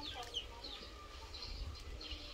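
A few short falling bird-like calls near the start, then fainter scattered calls over a steady low rumble.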